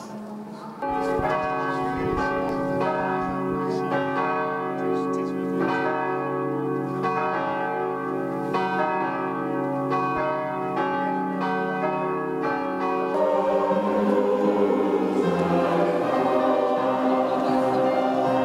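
Church bells ringing, a steady run of overlapping strokes, each one ringing on into the next. About thirteen seconds in they give way abruptly to a group singing.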